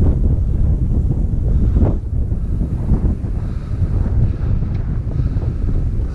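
Wind blowing across the camera microphone, loud and low-pitched.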